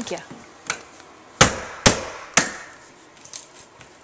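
Claw hammer striking a door frame at the hinge: a light knock, then three sharp blows about half a second apart, each ringing briefly.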